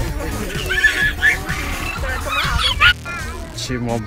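A toddler's high-pitched squeals and laughter over background music, loudest just before three seconds in.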